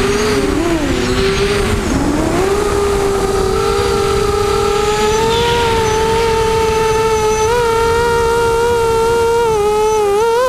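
Electric motors and propellers of a camera-carrying RC drone whining. Several pitches dip and cross in the first two seconds as it manoeuvres, then hold steady, with wind rumble on the microphone underneath.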